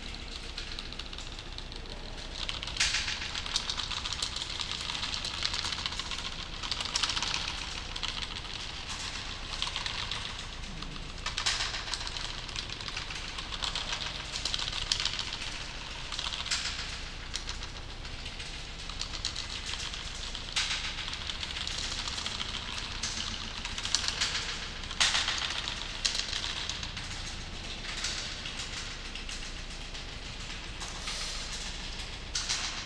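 Computer keyboard typing in bursts of rapid key clicks with short pauses between them, over a low steady hum.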